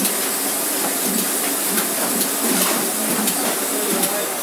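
Sheet-fed offset printing press running: a steady mechanical hiss and rumble of its rollers and sheet feed, with faint clicks recurring every half second or so.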